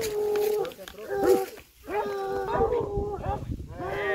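Hunting hound baying in about four long, drawn-out calls in a row: the dog is on a wild boar's trail.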